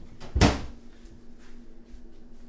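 A wooden kitchen cabinet door banging shut once, a sharp knock about half a second in, with a lighter knock just before it.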